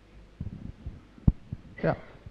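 A few soft low thumps, then one sharp knock about halfway through, followed near the end by a man briefly saying "yeah".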